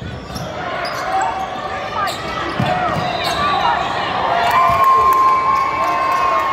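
Basketball game on a hardwood gym court: the ball bouncing, sneakers squeaking in short bursts, and voices in the gym. Near the end a high squeal is held for about two seconds.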